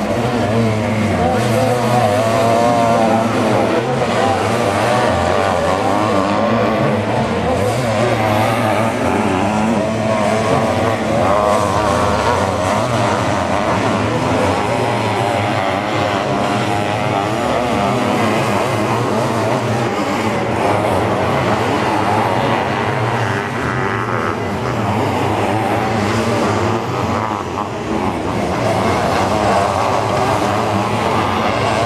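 Motocross sidecar outfits racing, their engines revving up and down over and over as they accelerate, corner and jump, with no let-up.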